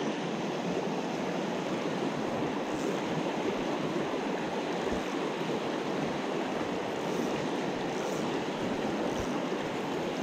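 Small mountain trout stream rushing over rocks and riffles: a steady, even rush of water. The stream is running high after heavy rain.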